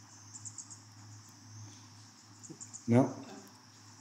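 Insects chirring in a steady, high continuous drone, with a few quick chirps on top a little way in and again just before a man's short laugh near the end, which is the loudest sound.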